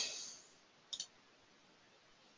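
A quick double click of a computer mouse button about a second in, faint against low hiss.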